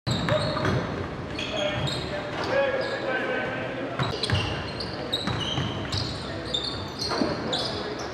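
Basketball bouncing on a hardwood gym floor about once a second during live play, with many short, high sneaker squeaks on the court.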